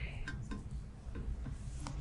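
A few faint, scattered clicks over a low, steady hum.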